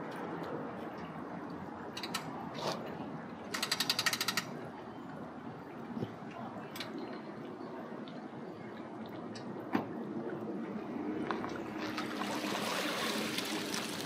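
A quick run of rapid ratcheting clicks, about a second long, about four seconds in, over a steady outdoor background hiss with a few single clicks scattered through. The hiss grows louder near the end.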